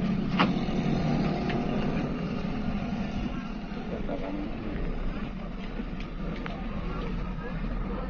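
Steady low drone of a bus engine heard inside the cabin while moving slowly in traffic, with a few sharp clicks.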